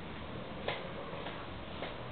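Steady background hiss with a sharp click about two-thirds of a second in and a fainter click near the end.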